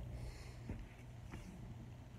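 Steady low hum of a large room's ventilation, with two faint clicks, the first under a second in and the second about half a second later.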